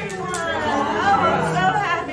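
Indistinct chatter: several people talking over one another.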